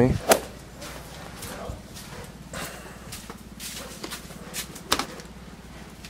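Handling noise from a hand-held helmet-mounted action camera: scattered clicks and knocks, a sharp one just after the start and another about five seconds in, over a faint steady low hum.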